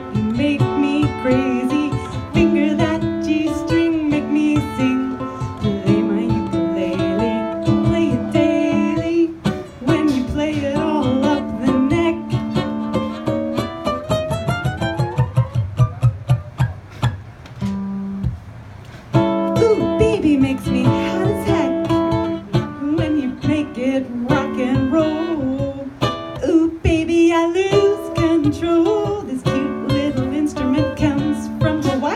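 Ukulele strummed in a blues song with a woman singing over it through a microphone. The voice drops out for a stretch in the middle while the ukulele plays on, and the playing briefly thins out about eighteen seconds in.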